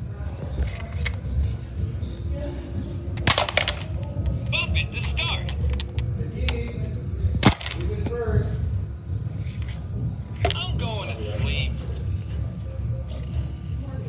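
Bop It handheld electronic toy playing its music and electronic voice calls, with sharp plastic clicks and knocks as its controls are worked, over a steady low rumble of handling noise.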